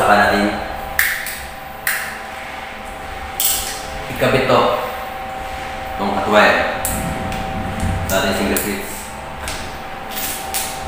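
A few sharp clicks and knocks from a hand tool and wiring being handled at a wall electrical box, with cutting pliers working a wire end. Short voice sounds come and go over a steady background hum.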